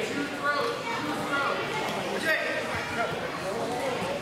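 Several voices overlapping and calling out in a large gymnasium: spectators and coaches shouting over one another.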